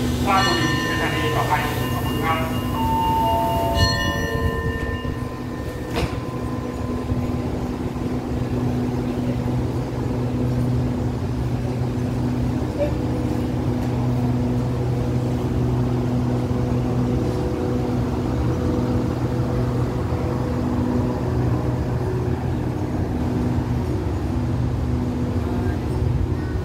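A Thai express passenger train at a station platform gives off a steady low drone as it moves slowly alongside. In the first few seconds there are a few stepped, falling pitched tones, like a voice or chime, and there is a single sharp click about six seconds in.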